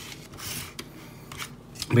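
Hands handling a small plastic mech action figure: a brief rustle about half a second in, then a few light plastic clicks as the figure is picked up.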